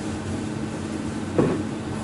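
Steady background hum and noise of the room, with one brief short sound about one and a half seconds in.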